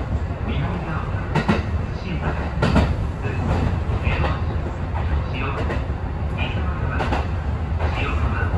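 Kintetsu express train running at speed, heard from inside at the front of the car: a steady low rumble of wheels on rail, with a sharp clack every second or so as the wheels pass rail joints.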